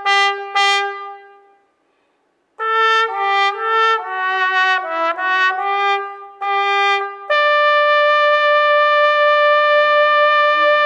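Unaccompanied alto trombone: a short phrase that dies away into a brief rest, then a quick run of notes leading into one long held high note.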